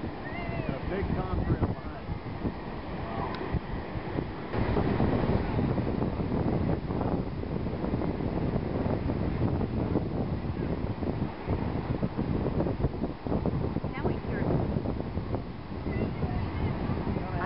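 Wind buffeting the microphone, with waves breaking on the beach and scattered voices of a crowd; the wind gets louder about four and a half seconds in.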